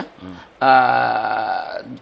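A man's voice holding one long, level hesitation sound, an 'eeeh', for about a second between spoken words, starting about half a second in.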